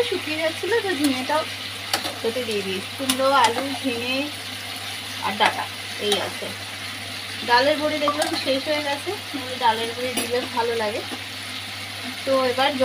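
A spatula stirring and scraping vegetable chunks frying in a nonstick pan, with a light sizzle and irregular clicks of the spatula against the pan. A voice is heard in the background throughout.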